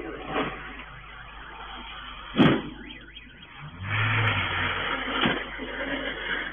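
A car engine revving as the car slides on snow. There is a sharp knock about two and a half seconds in, and the engine gets louder from about four seconds.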